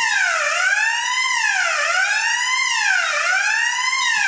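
Electronic fire alarm sounder wailing, its pitch sweeping down and up evenly about three times every two seconds.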